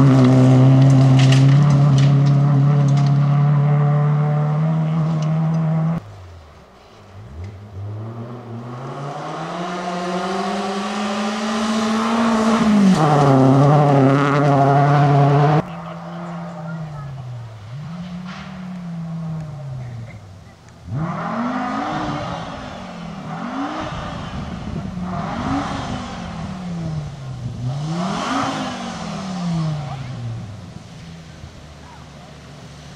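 Rally car engines at full throttle on a gravel stage. First an engine is held at steady high revs for several seconds, then the revs climb and drop through gear changes. Near the end a white Audi 80 rally car runs through a quick series of rising and falling revs as it shifts and brakes.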